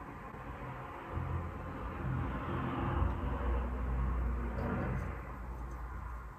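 A low rumble with a hiss over it that builds about a second in, peaks midway and eases off toward the end.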